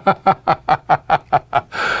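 A man laughing: a quick, even run of about nine short ha-ha pulses, closing on an out-breath near the end.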